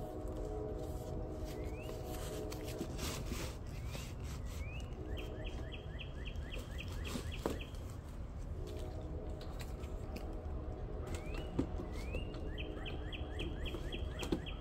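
A songbird sings two phrases, each a couple of rising whistles followed by a quick run of short notes, about six a second. Under it runs a faint low hum that comes and goes, with a few light knocks.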